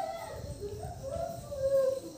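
High-pitched whining: several drawn-out, wavering notes, like a dog whimpering or a small child whining.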